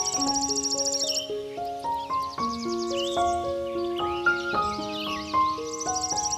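Slow, gentle solo piano music laid over a nature soundtrack. A high insect-like trill stops about a second in, and chirping calls come and go above the piano.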